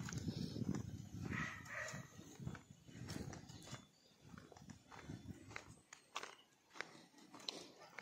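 Faint footsteps of a person walking on a concrete path, an irregular run of soft steps and light knocks.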